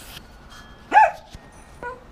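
A dog barks once, about a second in, followed by a shorter, fainter yelp near the end.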